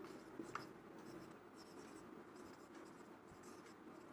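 Faint strokes of a marker pen writing on a whiteboard, the clearest about half a second in.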